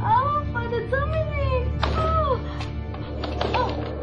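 Several drawn-out cries that rise and fall in pitch, each lasting about half a second to a second, over a low, sustained film music score.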